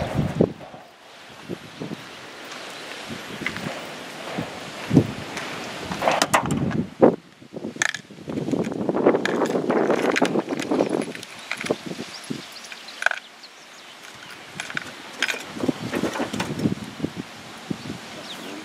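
Irregular metal knocks and clanks from people handling a rail draisine and its trailer, with a longer rustling noise around the middle.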